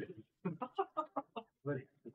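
A man's voice making a quick run of about eight short, clipped clucks: a chicken imitation as a taunt.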